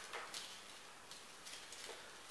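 Faint, irregular small ticks and rustles of a folded paper slip being handled and unfolded by a child's fingers.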